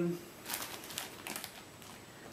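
Clear plastic bag crinkling faintly in fits as it is handled and opened, with a few soft rustles.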